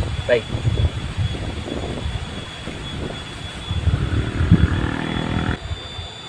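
Wind buffeting the microphone, a low, irregular rumble, with a faint steady hum joining about four seconds in; the rumble drops away suddenly near the end.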